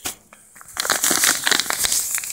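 Plastic packet of table salt crinkling and rustling close up as it is squeezed and tipped, with a burst of dense crackling about halfway in.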